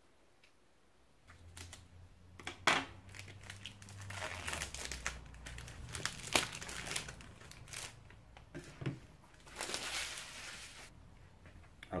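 Plastic bag crinkling as the battery acid container is pulled out of it: irregular crackly rustling with a few sharp snaps, starting about a second in and pausing briefly near the end.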